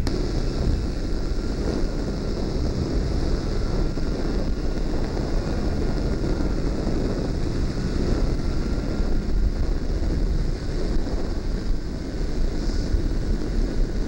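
Ultralight trike's pusher engine running steadily in flight, with wind rushing over the onboard microphone.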